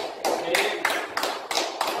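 Hands clapping at an even pace, about three sharp claps a second.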